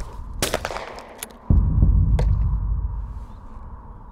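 Inside a skeet trap house, the throwing machine releases a clay target with a sharp clack, and about a second later a shotgun shot arrives as a muffled, low boom that dies away over a couple of seconds.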